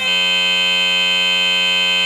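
A loud, perfectly steady buzzing tone with many overtones that replaces the folk music and tambourine all at once at the start. It is unchanging and mechanical-sounding, most likely an audio fault in the recording (a stuck or looping sound buffer) rather than an instrument.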